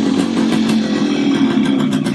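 Yamaha motorcycle engine running as the bike rides up and comes to a stop, a steady engine note throughout.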